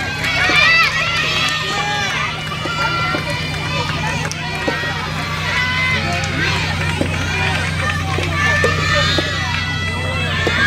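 Many voices shouting and calling out at once across outdoor soft tennis courts, with scattered sharp knocks and a steady low hum underneath.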